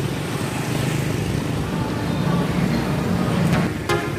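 Street traffic: motor scooters and cars passing on the road, a steady wash of engine and tyre noise that grows a little stronger toward the end.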